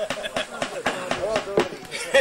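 People talking in the background, voices overlapping, with a few short knocks among them.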